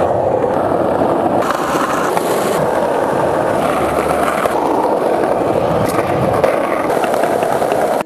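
Skateboard wheels rolling fast over rough pavement, a steady loud grinding noise.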